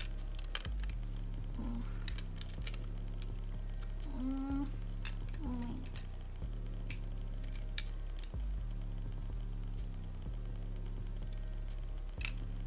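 Plastic pacifiers and their beaded clips clicking and clattering against each other as they are handled, with a few short vocal grunts of effort. Quiet background music underneath, its low chords changing about every two seconds.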